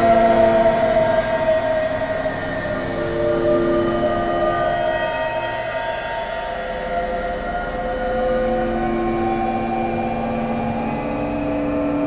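Dramatic film underscore: long sustained synthesizer chords whose notes change every few seconds, over a higher held note that slowly slides down and back up.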